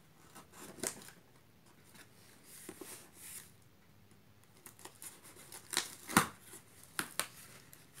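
Scissors cutting through plastic packing tape on a cardboard box: scattered sharp snips and clicks, the loudest cluster a little past the middle, as the cardboard flaps are pulled open.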